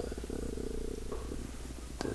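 A man's long, drawn-out creaky "uhhh" of hesitation while he searches for a name, fading out after about a second and a half.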